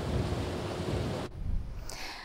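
Wind buffeting an outdoor microphone: a steady rushing noise, heaviest in the low end, that cuts off abruptly a little over a second in and leaves only faint hiss.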